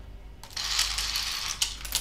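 Wooden letter tiles clattering as a hand stirs them in a plastic bowl and sets them down on a metal tray, starting about half a second in, with a few sharp clicks among the rattle.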